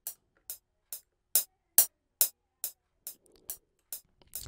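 FL Studio's software metronome ticking at 140 BPM, a little over two sharp clicks a second. Its volume is being set with a Fruity Balance plugin on the preview mixer track, so the clicks grow much louder toward the middle and drop back down near the end.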